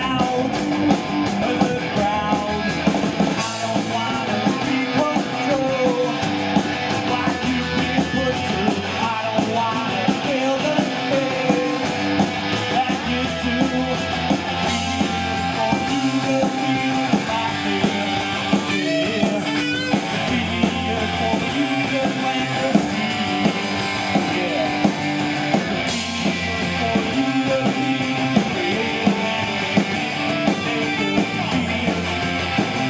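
A rock band playing live: electric guitars, bass and drums, at a steady loud level throughout.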